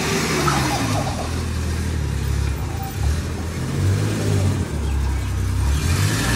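Small pickup truck engine running at low revs as the truck drives in slowly, its pitch rising and falling a little as it manoeuvres.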